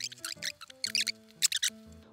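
A cat eating eagerly from a plate close by, a quick irregular series of sharp wet smacking clicks, over background music with held notes.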